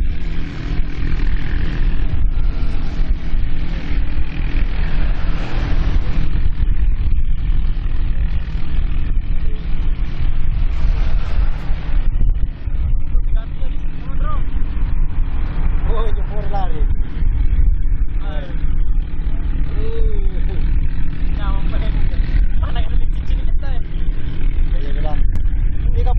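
Small engines of katinting outrigger racing boats running flat out, a steady loud drone over a heavy low rumble. Voices shout over the engines from about halfway on.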